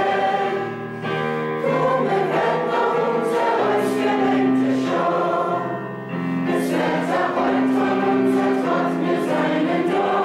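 Music: a choir singing slow, sustained chords that change every second or so.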